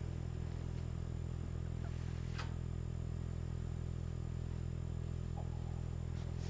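A steady low rumble that neither rises nor falls, with a single sharp click about two and a half seconds in.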